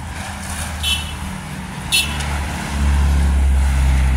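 City street traffic with a nearby car's engine running, its low hum growing louder about two-thirds of the way in as the car comes close. Two short, high-pitched chirps sound about a second apart in the first half.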